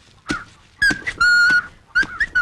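Long wooden pestles thudding in turn into a stone mortar as grain is pounded by hand. Between the strokes there is a short whistle about a second in, then a longer steady whistled note.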